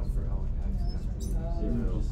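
Indistinct talking over a steady low hum.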